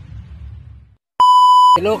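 A low rumble fades out, then after a brief gap comes a single loud electronic beep: one steady, high pure tone about half a second long. Talking starts just as the beep ends.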